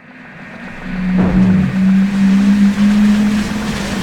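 A steady low engine drone fades in from silence with a rushing noise. About a second in, a sweep falls steeply in pitch.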